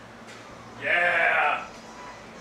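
A short, wavering vocal cry about a second in, lasting under a second, over a steady low hum.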